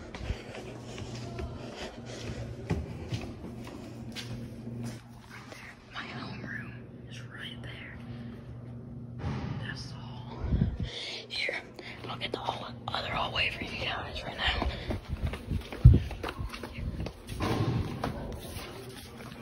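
Hushed whispering with footsteps and scattered knocks from the camera being handled, over a steady low hum; one sharp thump about sixteen seconds in.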